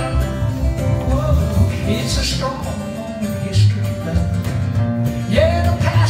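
Live folk-rock band playing: strummed acoustic guitar and plucked upright bass under a lead melody line.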